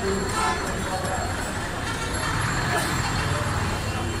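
Busy street ambience: a steady rumble of traffic with indistinct voices of people nearby.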